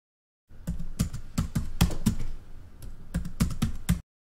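Computer keyboard typing: a quick, irregular run of keystrokes that starts about half a second in and cuts off abruptly.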